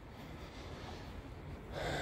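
Quiet outdoor background with faint breathing, a breath drawn in near the end.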